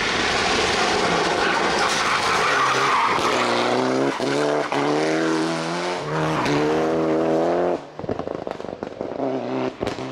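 Mitsubishi Lancer Evo IX's turbocharged four-cylinder engine at full throttle as the car slides through a corner with its tyres skidding. Then the engine revs climb again and again with short breaks between them. The sound cuts down sharply about eight seconds in, leaving a fainter, broken engine sound.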